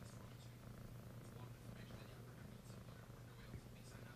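Domestic cat purring steadily and faintly, close to the microphone.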